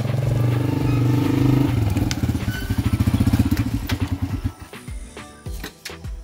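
A small motorcycle engine running as the bike rolls up. About two seconds in it drops to a slower, beating idle, and about four and a half seconds in it stops.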